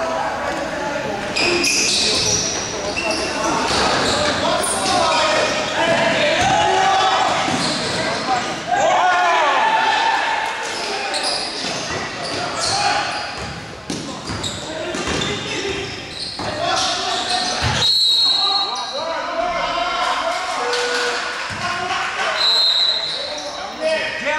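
A basketball bouncing on a gym court amid players' and onlookers' indistinct shouting and chatter, echoing in a large hall. A couple of short high squeaks or tones cut through near the end.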